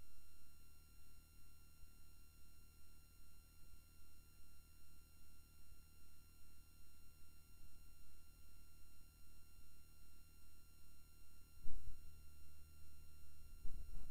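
Steady electrical hum and a set of high, thin whining tones left on the recording after the speech stops, typical of an old cassette tape transfer. A soft knock sounds about twelve seconds in, and a few fainter ones near the end.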